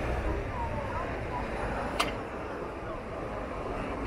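Outdoor ambience: a steady low rumble with faint distant voices, and a single sharp click about halfway through.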